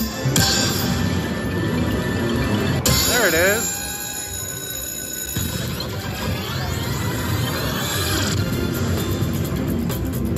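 Upbeat background music over the electronic sounds of an IGT Bonus Times dollar slot machine as its reels spin and free games are won: a short warbling tone about three seconds in, then sweeping tones a few seconds later.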